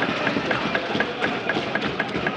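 Many hands thumping on wooden desks, a quick, uneven run of knocks at about four or five a second over a crowd's noise: desk-thumping, the way Indian parliamentarians applaud a point.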